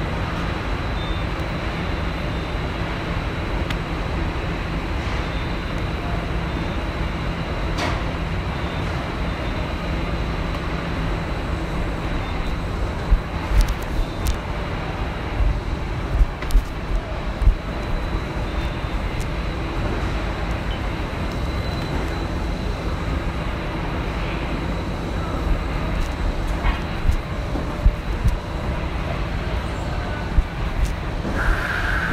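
Factory machinery noise: a steady low rumble with a hum and a thin high whine over it. Scattered sharp knocks and clanks come through, a cluster in the middle and another near the end.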